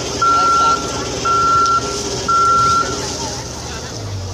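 Boom lift's motion alarm beeping: a steady single-pitched beep about half a second long, repeating once a second three times and then stopping, with the machine's engine running underneath.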